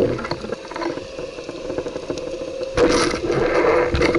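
Muffled underwater noise picked up through an action camera's waterproof housing: water rushing past and the housing rubbing and knocking, with a louder surge of rushing noise near the end.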